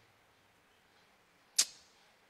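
Near silence, then about one and a half seconds in a single short, sharp hiss that fades within a moment.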